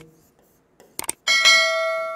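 Subscribe-button animation sound effect: a couple of quick mouse clicks about a second in, then a bright bell chime that rings and slowly fades away.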